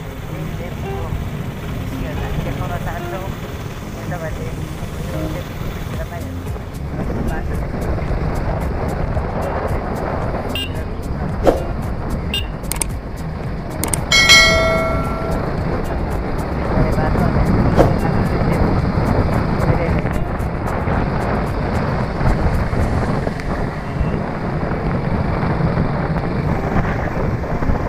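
Steady motorcycle ride noise: engine and road rumble with wind on the microphone, and a short pitched tone about 14 seconds in.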